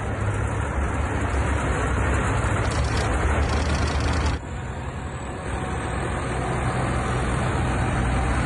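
Diesel engines of a column of BELARUS tractors driving along a road, a steady low rumble with traffic noise. The sound cuts abruptly a little over four seconds in, drops, and then grows louder again as a tractor passes close.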